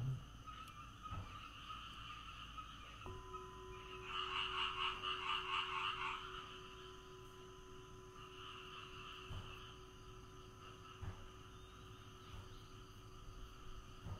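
Frogs croaking in rapid pulsing bursts: a louder burst about four seconds in and a fainter one near the middle, over a steady high-pitched chorus. A faint steady tone starts suddenly about three seconds in.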